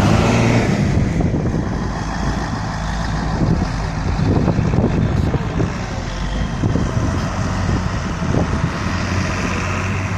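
Heavy vehicle engines running steadily with a low hum as a fire engine tows a bus out of deep snow on a cable. Scattered short crackles come through in the middle.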